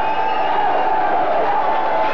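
Studio audience cheering and shouting, many voices at once in a steady din.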